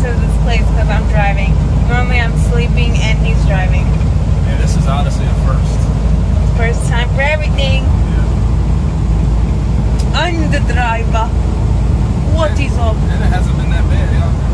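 Steady low engine and road rumble inside the cab of a moving truck on the road, with voices talking over it.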